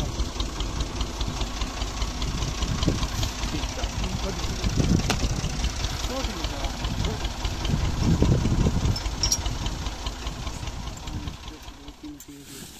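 Tractor engine running steadily at idle with a rapid, regular knock, fading toward the end.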